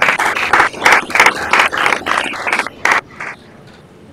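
Audience applauding, a dense run of claps that dies away about three seconds in.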